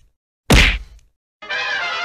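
Intro sound effect: one sudden, sharp hit about half a second in that dies away within half a second, followed near the end by a held musical chord with many steady tones.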